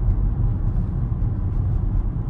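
Steady low road and tyre rumble heard inside a Tesla's cabin while it cruises at about 35 mph on a wet, slick road, with no engine note.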